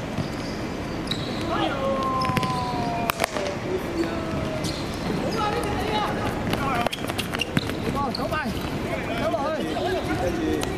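Sounds of a football match on a hard court: sharp thuds of the ball being kicked and players' feet on the surface, with players shouting to each other, including a long drawn-out call a couple of seconds in.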